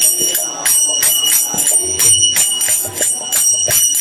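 Kirtan music: brass karatals (small hand cymbals) clashing in a steady beat of a few strokes a second, each stroke ringing high, with drum beats underneath.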